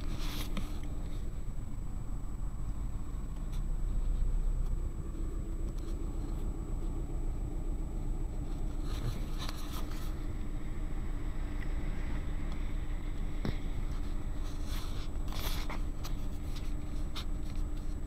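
Inside a Suzuki Alto crawling in traffic: a low, steady engine and road hum heard through a dashboard camera's microphone. A few brief scrapes come midway and again later.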